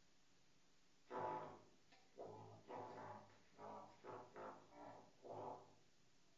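Trumpet played into a hand-held mute: after a second of quiet, a string of about eight short, muffled notes in an uneven, speech-like rhythm that follows the rhythm of a spoken sonnet line.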